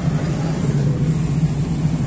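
Large diesel engine of heavy machinery running steadily under load, a continuous low drone.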